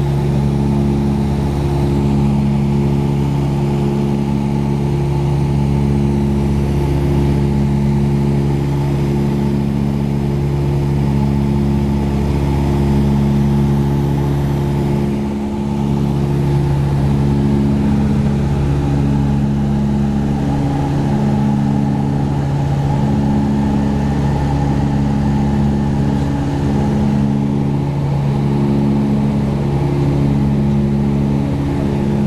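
Cabin drone of a Tecnam P2006T's two Rotax 912 four-cylinder engines and propellers in steady cruise, with a slow pulsing every second or two as the two propellers run slightly out of sync.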